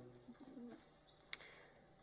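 Near silence: room tone, with a faint, low murmur in the first second and a single short click a little past the middle.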